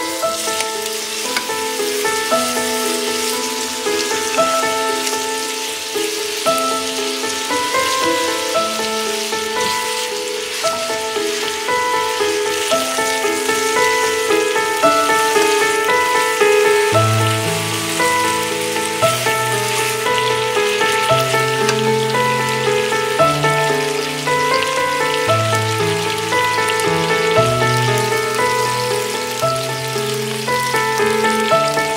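Chicken thighs sizzling as they fry in olive oil in a pan, a steady crackling hiss, under light background music whose bass line comes in about halfway through.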